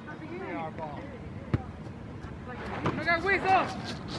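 Voices of soccer players and spectators calling out across the field, fainter than a nearby speaker, with one sharp knock about a second and a half in.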